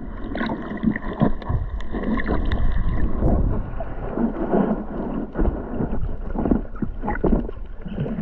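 Muffled water noise heard underwater through a waterproof camera housing: an uneven low rumbling and gurgling that surges again and again as the camera moves through the water, with faint clicks.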